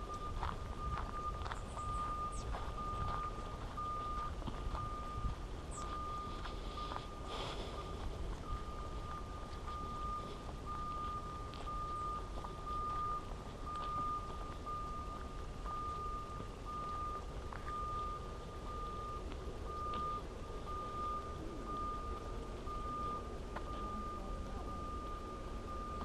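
A high electronic beep of one steady pitch, repeating about once a second, over a low rumble of wind on the microphone.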